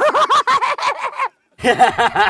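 A man laughing loudly in a quick run of repeated 'ha' bursts, which breaks off about a second and a half in and then starts up again near the end.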